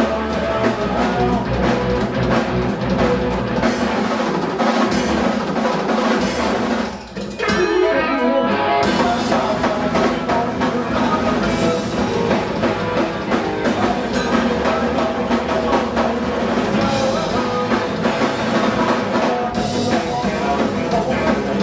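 Punk band playing live, electric guitar and drum kit, loud and driving. About seven seconds in the band stops for a moment, then crashes back in.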